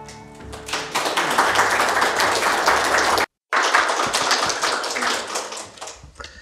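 The last acoustic guitar chord dies away, then an audience applauds. The clapping cuts out briefly about three seconds in, resumes, and fades out near the end.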